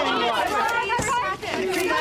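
Speech: people talking, with a brief click about a second in.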